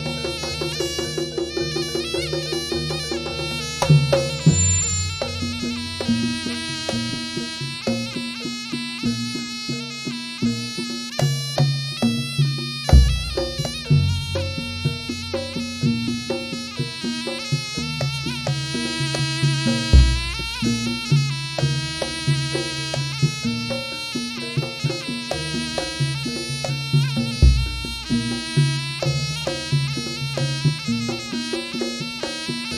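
Traditional Javanese ensemble music accompanying a barong dance: a nasal reed-pipe melody over busy hand-drum rhythms, with a deep gong-like stroke about every seven seconds.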